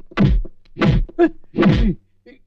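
Loud dubbed-in comic whack sound effects, three heavy hits about two-thirds of a second apart. Each hit is a deep thud with a short falling tone, and a smaller knock comes between the last two.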